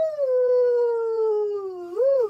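A high singing voice holding one long note that slides slowly down in pitch, a vocal-play glide tracing the tape measure spider's movement.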